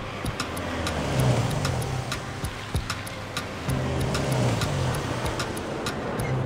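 A Toyota HiAce van driving up with a steady low engine and road rumble, under an evenly spaced ticking of about three ticks a second.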